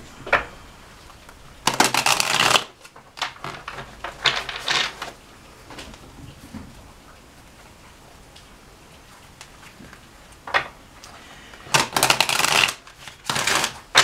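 A deck of cards being shuffled by hand: short bursts of rapid card flutter, one about two seconds in, another around four to five seconds, and two more near the end, with quiet stretches between.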